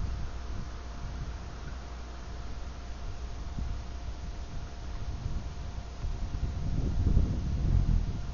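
Wind rumbling on the built-in microphone of a Pilot CL-3022WK dashcam, heard through its own low-quality recording, with a faint steady high tone throughout; the rumble swells near the end.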